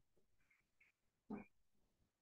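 Near silence, broken once by a short, faint sound about one and a half seconds in.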